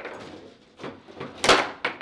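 Table football play: a quick run of sharp plastic knocks and clacks as the ball is struck by the rod figures and bangs against the table, with the loudest hit about one and a half seconds in.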